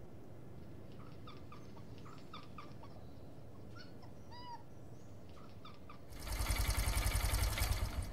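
Small birds chirping in short, separate calls over a quiet outdoor background, with one clearer call about four and a half seconds in. About six seconds in, a much louder fast pulsing rustle sets in and runs for about two seconds.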